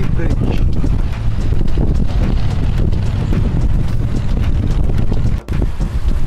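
Wind buffeting the microphone on the open deck of a moving river cruise boat, a steady low rumble, with a brief dropout shortly before the end.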